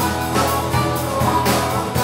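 A live blues band playing: harmonica over acoustic guitar and a drum kit keeping a steady beat.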